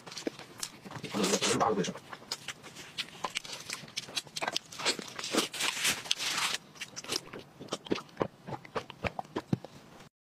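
Close-miked eating of saucy braised pork belly: wet chewing with lip smacks and sticky mouth clicks in quick irregular runs, loudest about one to two seconds in.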